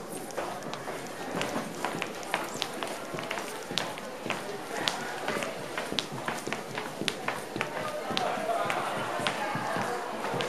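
Footsteps on a hard wooden floor: shoes click sharply and irregularly, a few times a second, over a background murmur of voices.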